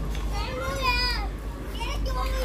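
A high-pitched voice calls out once in a drawn-out, arching call about half a second in, over a steady low hum.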